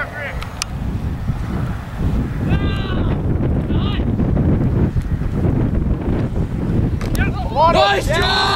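Wind buffeting an outdoor microphone with a steady low rumble, and high-pitched shouts and yells from people at the field about two and a half seconds in, again at four seconds, and loudest near the end.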